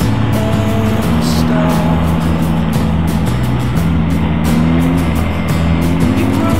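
Music with a steady bass line and short melody notes, heard over the running engines and road noise of a group of motorcycles on the move.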